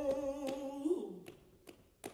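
Male flamenco singer holding one long note of a bulería, without guitar, that slides down and breaks off about a second in. It is followed by a few sharp, sparse hand claps (palmas).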